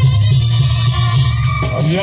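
A Mexican brass band (banda) playing, led by a heavy tuba bass line under higher horns. The music breaks off near the end and a voice comes in.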